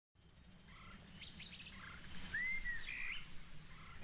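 Faint birdsong: scattered short chirps and whistles, with one clear arching whistle about halfway through, over a low steady outdoor rumble.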